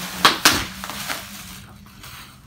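Plastic bubble-wrap packing crinkling and a cardboard box rustling as the box is unpacked. Two sharp crackles come close together near the start, then quieter rustling.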